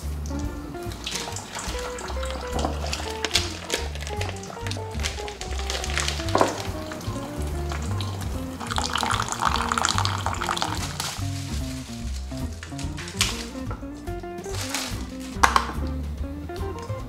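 Background music with a light, bouncy melody plays throughout. A thin stream of water from a countertop water-purifier tap pours into a glass bowl of sausages for a couple of seconds around the middle. There is a sharp knock about six seconds in and another near the end.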